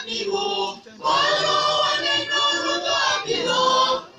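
Church choir singing in parts, women's and men's voices together, holding long sung notes, with a short break between phrases about a second in.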